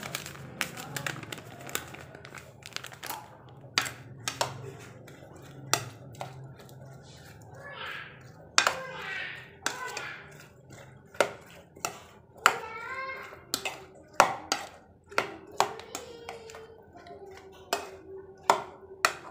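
A metal spoon clinking and scraping against a bowl as chopped fruit with cream is stirred: irregular sharp clinks throughout. Voices are heard briefly in the background about eight and twelve seconds in.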